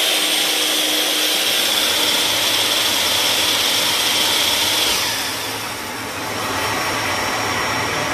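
A miter saw running at full speed with a high steady whine, together with a dust-collection vacuum that its tool-activated switch has turned on. About five seconds in the saw is switched off and its whine stops, while the vacuum keeps running on its programmed five-second run-on.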